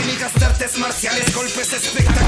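Spanish-language hip hop track with rapped vocals over a beat; the deep bass drops out for most of this stretch, leaving short drum hits, and returns at the end.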